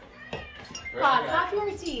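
A loud, wavering, meow-like call about a second in, lasting about half a second, followed by a short click near the end.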